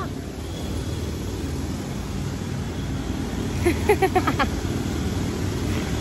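Steady low rumble of city traffic, with a brief burst of quick laughter about four seconds in.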